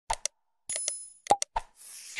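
User-interface sound effects of a like-and-subscribe animation: quick mouse-click pops, a short high bell ding about two-thirds of a second in, another run of clicks, then a whoosh near the end.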